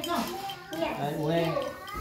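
Voices talking, one of them a child's.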